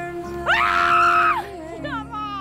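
A person screams loudly and high for about a second, over background music with long held notes, then gives a falling wail near the end.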